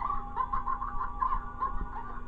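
Cartoon soundtrack music with a rapid run of short, clucking bird-like notes, about six a second, over held tones.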